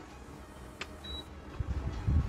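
A single short high-pitched beep about a second in, after a faint click, then bursts of low rumbling handling noise on the microphone near the end as the camera is swung around.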